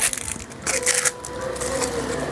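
Hard translucent plastic glasses cases being handled and moved on a mat: irregular plastic clicks, scrapes and crackles, busiest just under a second in.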